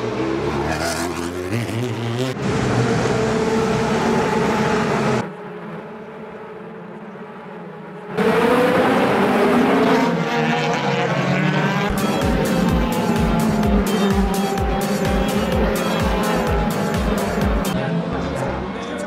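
DTM racing cars' V8 engines running hard as the cars pass, their pitch rising and falling, with a quieter stretch in the middle. Background music with a steady beat comes in about two-thirds of the way through.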